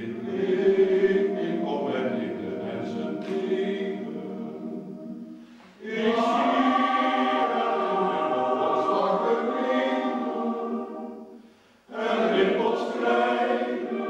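Male voice choir singing in three long phrases, each followed by a brief pause for breath: one ending just before 6 seconds in, another just before 12 seconds.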